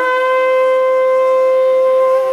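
Shofar sounding one long, steady, held note.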